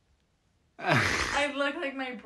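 A person's breathy, wordless vocal reaction, a sigh or gasp running into a drawn-out voiced sound, starting about a second in after near silence.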